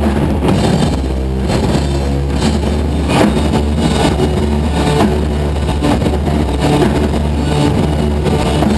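Live rock band playing loudly: electric guitar over a heavy, steady bass drone, with occasional drum hits.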